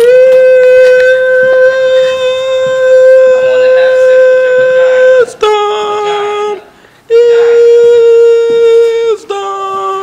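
A person singing loud, long held notes close to the microphone: one note held for about five seconds, a short lower note, a brief break, then the first note again before dropping lower at the end.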